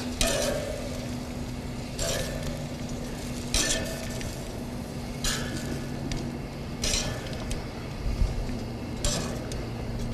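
Metal tongs clinking against the grill grate and serving tray as grilled pepper pieces are lifted off, about six short clinks spaced a second and a half to two seconds apart, over a steady low hum.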